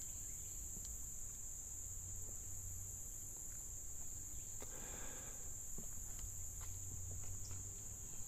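Steady high-pitched chorus of insects in summer woodland, with a few faint footsteps on a wooden plank bridge deck.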